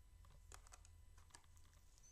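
Near silence with a few faint, scattered clicks of computer keyboard keys.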